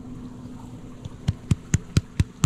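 A hand patting the body of a large monitor lizard: a regular run of short, dull pats, about four a second, starting about a second in.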